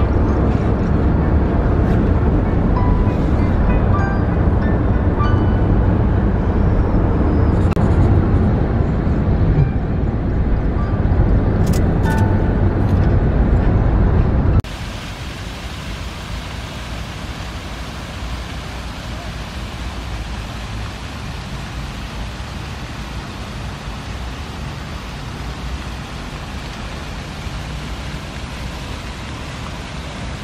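Loud, steady road and engine noise inside a moving car. About halfway through it cuts abruptly to a quieter, even outdoor hiss.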